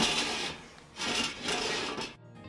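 A water-filled speckled enamelware canner scraping across a gas stove's metal grate, in two drags: a short one at the start and a longer one from about a second in.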